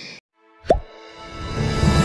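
A single short plop sound effect about two-thirds of a second in, its pitch dropping quickly. Then outro music fades in and grows steadily louder.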